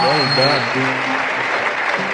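Concert audience applauding an oud taqsim, a dense steady clatter of clapping, with a few voices calling out over the first half-second.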